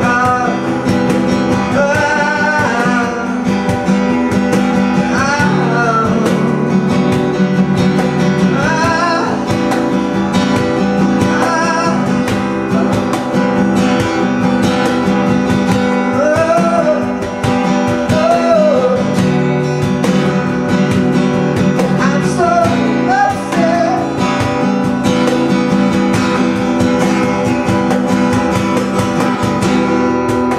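Live acoustic band music: a steel-string acoustic guitar strummed steadily with a cajón keeping time, and short wavering vocal phrases rising over it every few seconds.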